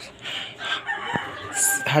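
A rooster crowing in the background, with a single sharp click about halfway through.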